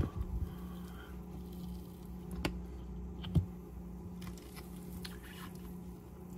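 A silicone spatula is pressed into and cuts through a soft egg whose shell has been dissolved in 4 molar nitric acid, leaving only the membrane and a cooked white. The cutting is faint and soft, with two short sharp clicks near the middle, over a steady low hum.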